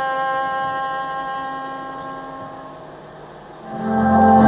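Violin holding one long final note that slowly dies away. Near the end, a live band loudly starts the next piece.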